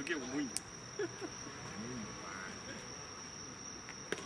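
Crickets trilling in one steady high tone, with distant voices calling out now and then and a single sharp click about half a second in.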